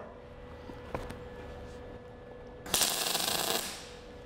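MIG welder arc on scrap steel: a short crackling burst of under a second, starting near three seconds in. The heat is still set too low, and the bead comes out 'still not so good', sitting proud on the surface rather than penetrating.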